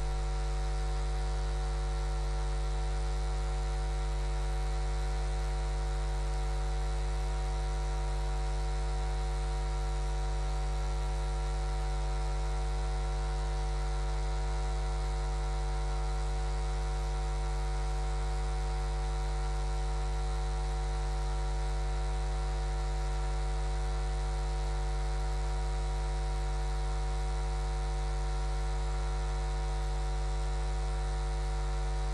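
Steady electrical mains hum with a stack of higher overtones, holding at one even level. The live studio feed has lost its programme sound, leaving only the hum.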